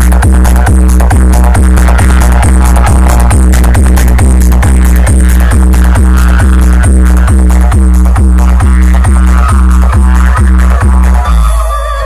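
Very loud electronic DJ dance music played through a huge stacked DJ speaker rig, with heavy bass on a fast, steady beat. The bass drops out just before the end.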